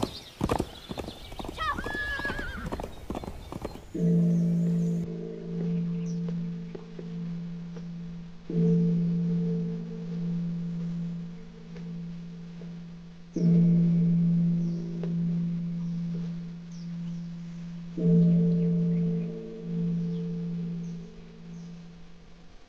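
A horse galloping, with a whinny about two seconds in. From about four seconds in, a large temple bell is struck four times, roughly every four and a half seconds, each stroke ringing long and deep.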